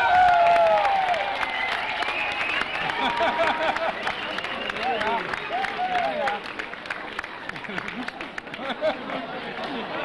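Audience applauding, dense clapping with voices calling out over it, loudest at first and easing off toward the end.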